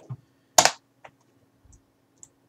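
A single sharp computer click about half a second in, then a fainter tick: keyboard keystrokes or mouse clicks at a computer.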